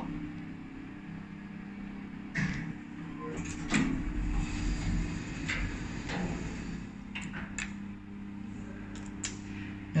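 Inside a running Otis passenger lift car: a steady low hum, with a few scattered clicks and knocks from the car's mechanism and buttons.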